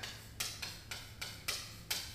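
Chalk writing on a chalkboard: a run of about six short, sharp taps and scrapes as each letter is stroked on.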